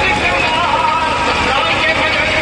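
Loud, steady din of a street procession: voices and amplified music over a low rumble, with no single event standing out.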